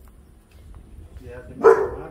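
A dog gives a single defensive bark near the end, after a quieter short sound just before it.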